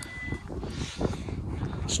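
Wind rumbling on the microphone, with a short, steady high-pitched beep at the very start and a single knock about a second in.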